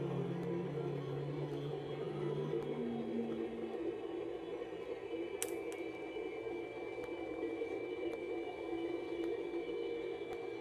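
Slowed-down, echo-processed drone of sustained low tones that fade out about three or four seconds in. A sharp click comes about halfway through, followed by a thin, steady high tone.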